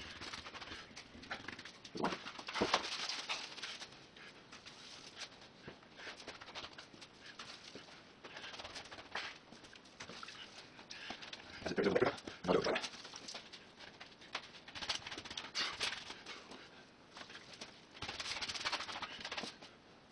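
Wet plaster cloth being dipped in a tray of water and smoothed by hand over foam: irregular wet rubbing and splashing, with louder bursts about two seconds in and around twelve seconds.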